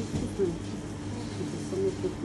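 Faint, indistinct voices over a steady low hum.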